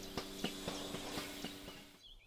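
DeLaval milking robot machinery running: a steady multi-tone hum over a hiss, with irregular light clicks.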